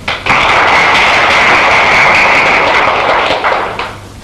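Hall audience applauding: dense, even clapping that starts abruptly just after the start, holds steady, then dies away near the end.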